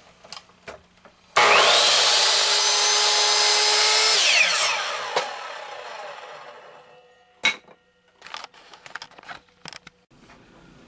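Electric miter saw switched on about a second and a half in, its motor whining loud and steady for about three seconds while it cuts a wooden frame piece at 45 degrees, then spinning down with a falling whine after release. Short knocks and clicks of the wood being handled come before and after.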